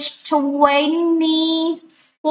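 A woman's voice saying "twenty-four" in a sing-song way, the last syllable drawn out into one long, steady note of about a second and a half.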